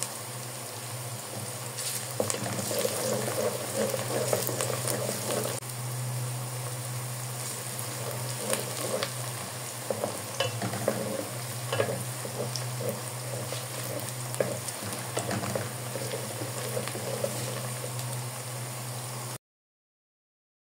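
Chopped onions frying in oil in an aluminium pot, a steady sizzle with scattered crackles, and a wooden spoon stirring them now and then. A steady low hum runs underneath, and the sound cuts off abruptly about a second before the end.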